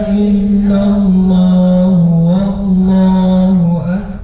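Quran recitation chanted in Arabic, with long, steadily held notes that step up and down in pitch. It eases off near the end.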